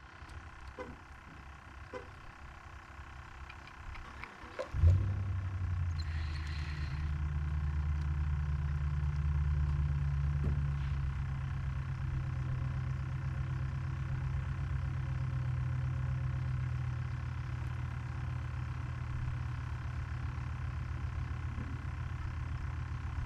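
A low engine rumble starts suddenly about five seconds in and then runs steadily, after a few seconds of faint outdoor background.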